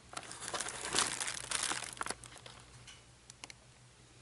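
Clear plastic blister packaging crinkling and crackling under a thumb as the button bubble is pressed, busiest for about the first two seconds, then a few faint clicks.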